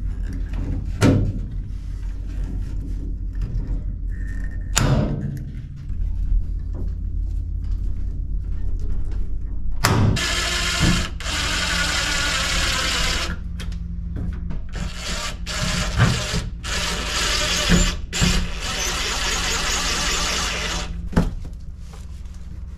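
A hand pop-rivet tool snapping rivets into an aluminium shower frame, sharp single clicks, followed by a cordless drill running in start-stop bursts for about ten seconds.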